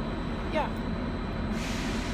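Steady low rumble of a train standing at the station platform, with a short hiss near the end.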